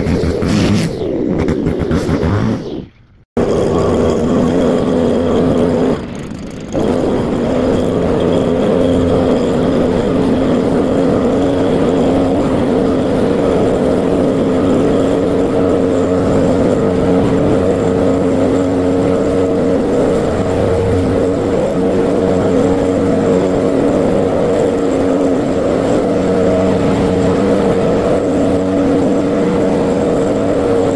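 Leaf blower running steadily at a constant pitch, blowing wet grass clippings off a path. It eases off briefly about six seconds in. It is preceded by a short break to silence about three seconds in.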